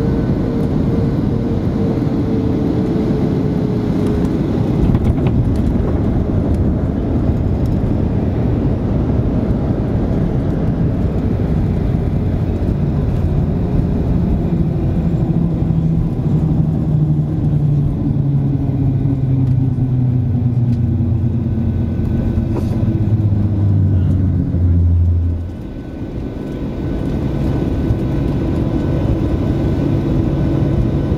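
Jet airliner heard from inside the cabin during the landing roll-out: a loud, steady rumble with several tones gliding slowly downward as the aircraft slows. About five seconds before the end the lowest tone cuts off abruptly and the sound dips briefly before settling again.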